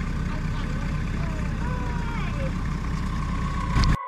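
Longtail boat engine running steadily with a low rumble, heard from aboard the boat; the sound cuts off suddenly just before the end.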